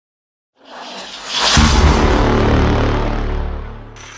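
Intro logo sound effect: a swelling whoosh starting about half a second in, then a heavy deep boom about a second and a half in that rings on and fades away near the end.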